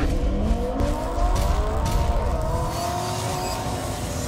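Car engine revving up as an intro sound effect: a low rumble whose pitch climbs steadily over the first couple of seconds, then levels off and fades a little near the end.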